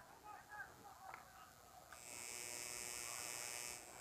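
A steady, high buzz made of many even tones starts about halfway through and cuts off near the end. Before it there are only faint, scattered distant sounds.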